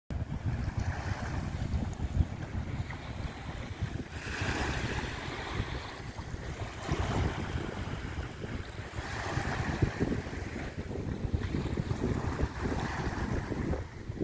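Wind buffeting the microphone over small waves washing onto a sandy beach; the wash of the water swells up a few times, about every two to three seconds.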